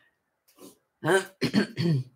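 A woman clearing her throat in about three short voiced bursts, starting about a second in.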